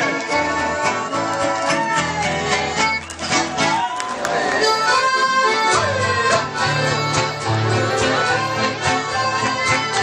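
Live mariachi band music: an accordion carries the melody over strummed acoustic guitars, with a fuller bass line coming in about six seconds in.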